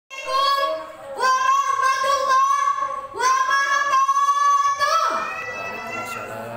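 A boy singing in three long, held melodic phrases through a microphone, a high voice with a little wavering on the held notes; it stops about five seconds in, leaving only room sound.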